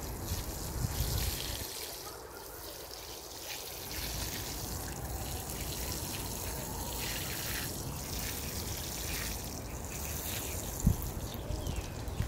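Water sprinkling from the rose of a plastic watering can onto compost in plant pots, a steady trickle with a quieter stretch about two seconds in. A single knock near the end.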